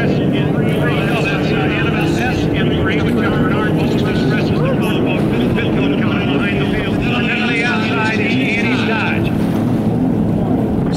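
Several vintage racing hydroplanes running at speed in a heat, heard as a steady, loud engine drone with whines that waver up and down in pitch.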